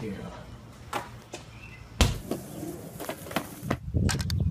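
A basketball thrown at an outdoor hoop: a few sharp knocks and thumps as it strikes the hoop and bounces, the loudest about halfway through.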